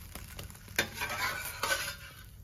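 Bread omelette sizzling in a steel kadai, the bread charred and smoking, while a utensil scrapes and clicks against the pan. There is a sharp metal click a little under a second in, then a longer scrape near the end.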